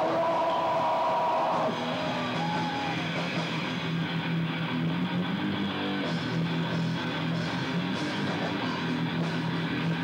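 Live metal band playing with distorted electric guitars, bass and drums. A held high note rings through the first couple of seconds, then the band carries on with a lower, steady riff.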